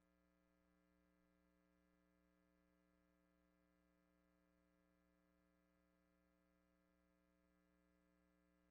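Near silence with a faint, steady electrical hum made of several even tones.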